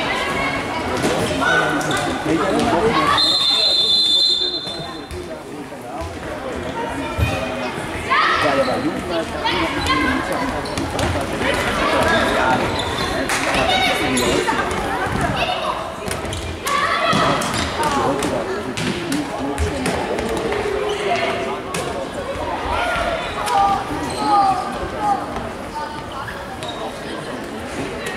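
A ball being kicked and bouncing on a wooden sports-hall floor during a youth indoor football game. Players and spectators shout and call throughout, echoing in the hall. A short whistle blast sounds about three seconds in.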